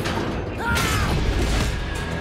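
Cartoon action sound effects over a dramatic music score: a mechanical creaking, then a sudden rushing burst with a swooping whine about a third of the way in as a figure lands amid scattering debris.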